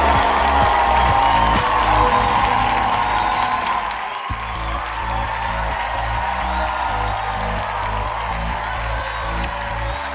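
Background music with a steady, stepping bass line that drops out briefly about four seconds in, with crowd cheering and applause mixed in underneath.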